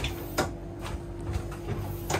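Overhead wooden galley locker door on a yacht being unlatched and lifted open: two sharp clicks in the first half second, then a few faint ticks, over a steady low hum.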